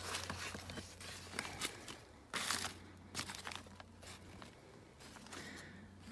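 Old newspaper rustling and crinkling in the hands as it is pulled out and unfolded, in irregular bursts, the loudest about two and a half seconds in.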